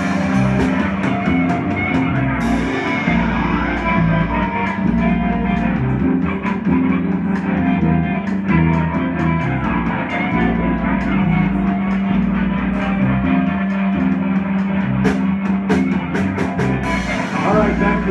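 Live rock band playing loud: bass guitar, electric guitar and drum kit, with frequent drum and cymbal hits over a sustained bass line.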